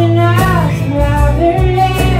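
A live country band playing: steady electric bass and strummed acoustic guitar under a high melody line that bends and slides in pitch, with a fiddle bowing.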